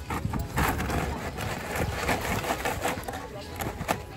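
Restaurant table sounds: cutlery clinking and scraping on plates, over the murmur of diners talking. A sharp clink comes near the end.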